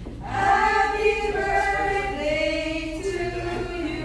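A small group singing together without instruments, in long held notes. A new phrase begins just after a short breath at the start.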